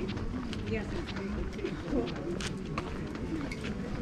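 Busy pedestrian street ambience: people talking nearby, mixed with short sharp clicks of footsteps on paving.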